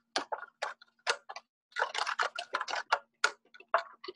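Irregular run of small clicks and taps from a paintbrush being rinsed and knocked against a water cup, over a faint steady hum.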